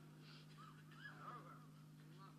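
Near silence: a low steady hum, with a few faint, short rising-and-falling voice-like sounds in the middle.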